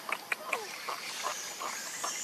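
Baby macaque sucking milk from a plastic bottle: soft scattered clicks, with one short falling squeak about half a second in.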